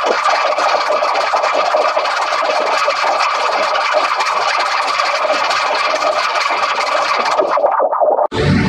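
A TV channel ident jingle heavily distorted by stacked audio effects into a dense, harsh, buzzing wash with no bass, held at a steady loud level.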